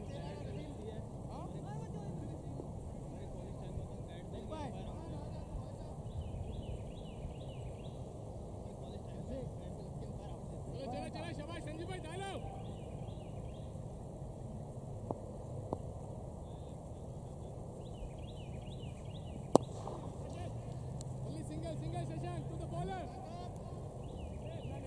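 Open-air ambience with birds chirping and faint voices, broken once, about four-fifths of the way in, by a single sharp crack of a cricket bat striking the ball.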